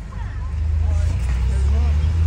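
Low, steady vehicle rumble heard from inside a car, growing louder about half a second in, with faint voices over it.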